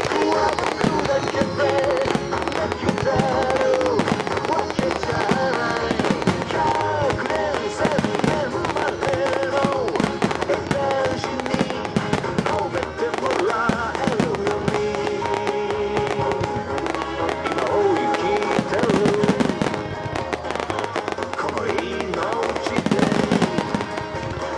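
A pop song with a singer playing for a music-synchronised fireworks show, with fireworks shells bursting and crackling throughout.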